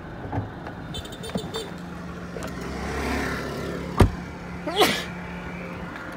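A 2006 Honda Civic's engine idling steadily, a crisp-sounding idle, while someone moves around the car; a single sharp knock about four seconds in, like a car door shutting, is the loudest sound.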